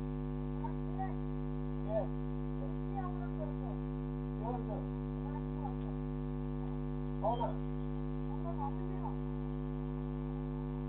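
Steady electrical mains hum, a low buzz with many even overtones, picked up by a security camera's microphone, with a few faint, brief distant sounds about two, four and a half and seven seconds in.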